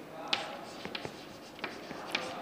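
Chalk writing on a chalkboard: faint scratching with a few light, sharp taps as the strokes are made.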